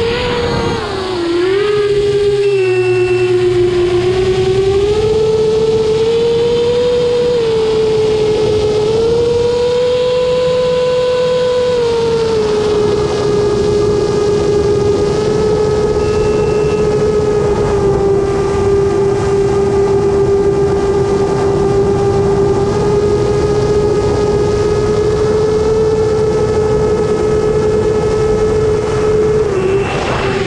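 Electric motors and propellers of a drone whining in flight, recorded by the onboard camera. The pitch rises and falls over the first dozen seconds as the throttle changes, then holds almost steady.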